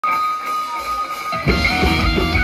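Live rock band with electric guitars, bass and drum kit: a single high note is held for about a second and a half, then the full band comes in hard with drums and bass.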